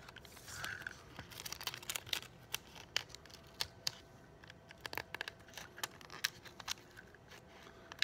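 Faint crinkling and scattered small clicks of clear adhesive tape being handled and pressed down by fingers onto the robot's base to hold a bottle-cap bumper.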